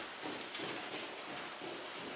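Footsteps going down concrete stairs: a quick run of soft steps, roughly three a second.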